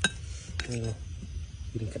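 A metal spoon strikes a ceramic plate once with a sharp clink and a brief ring.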